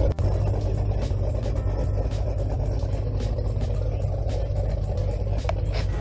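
Boat outboard motor running steadily under way, a dense low rumble with wind rushing and buffeting over the microphone.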